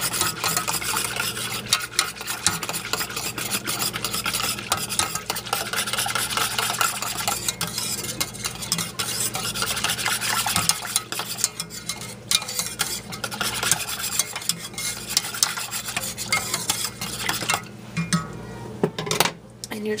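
Wire whisk beating milk and cream in a stainless steel saucepan to work in cinnamon, a rapid, continuous scratchy rattle of the wires against the pan. The whisking stops near the end.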